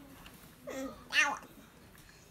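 A toddler's short, whiny vocal sounds: a brief one a little over half a second in, then a louder one that rises sharply in pitch about a second in.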